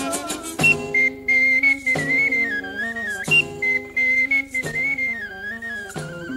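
A high, clear, whistle-like melody played on a small wind instrument cupped in the hands, holding notes and sliding between them with a wavering pitch. Beneath it, the band's lower accompaniment sustains, with a few sharp percussion hits.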